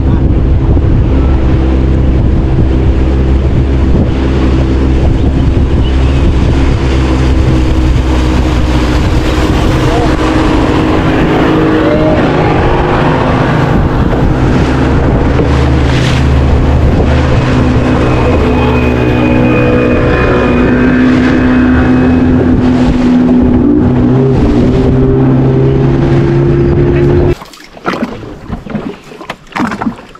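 Motor of a long wooden river boat running steadily at speed, with the rush of wind and water along the hull. The engine sound cuts off suddenly near the end.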